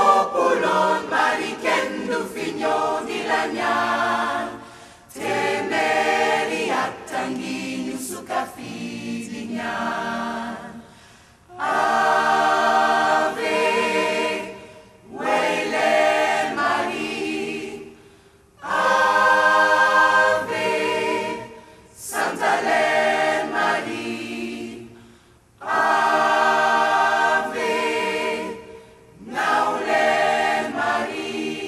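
Large mixed gospel choir singing unaccompanied in harmony, in held phrases of about three seconds broken by short pauses, with vibrato on the sustained chords.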